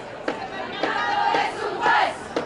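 A women's protest chorus chanting together over a sharp beat about twice a second; the group shout swells and is loudest near the end.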